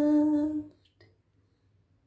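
A woman's unaccompanied voice holding the last note of an a cappella song on one steady pitch, fading out within the first second.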